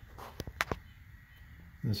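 Quiet room with a few short, sharp clicks about half a second in, then a man's voice starts near the end.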